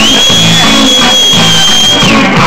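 Amplified electric guitar playing blues: a single piercing high note, bent up slightly at the start and held for about two seconds, over a low bass line.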